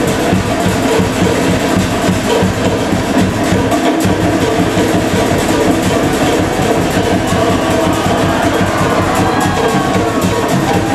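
Loud, fast-paced Polynesian show music driven by rapid drumming, accompanying a fire-knife dance.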